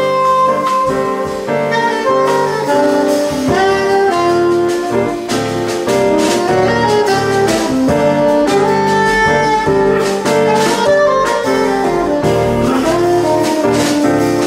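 Live jazz combo playing: a soprano saxophone carries the melody over electric bass, electric guitar, piano and drum kit with cymbals.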